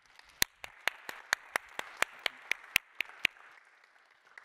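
Audience applauding a speaker, a thin spread of clapping with one set of hands close by striking sharply about four times a second; the applause dies away a little after three seconds in.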